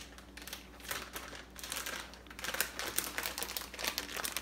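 Plastic bag of shredded cheese being opened and handled, crinkling with a run of small clicks that grows busier in the second half.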